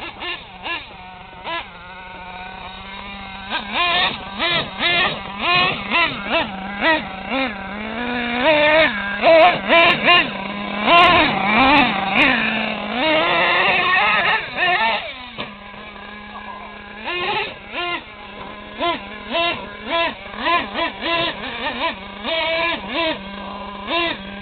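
Radio-controlled monster truck's motor revving in many short throttle blips that rise and fall in pitch, busiest in the middle, over a steady low hum. It is running in first gear only, its second gear melted.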